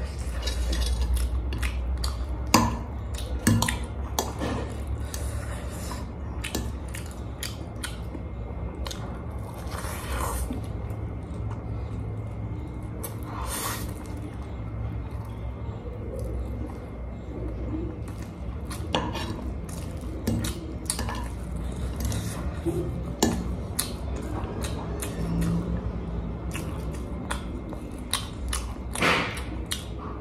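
A metal fork clicking and scraping against a ceramic plate of noodles, many short sharp clinks at an uneven pace, with eating sounds in between and a steady low hum underneath.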